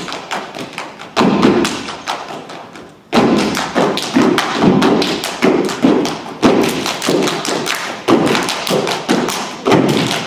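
Step team stepping in unison: stomps on the stage floor and hand claps and body slaps. A few heavy strikes open it, there is a short pause about three seconds in, and then a fast, even run of stomps and claps follows.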